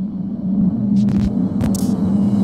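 Glitch-effect sound design for an animated logo: a steady low electronic hum, growing slightly louder, broken by short bursts of crackling static about a second in and again a little later.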